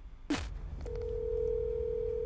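Telephone ringback tone heard over a phone's speaker: one steady ring about two seconds long, starting nearly a second in, the sign of an outgoing call ringing at the other end. Just before it, a brief swish.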